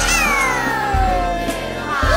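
Music with a heavy, steady bass beat. Over it, a long pitched glide falls steadily from high to low across the two seconds, and a second falling glide begins near the end.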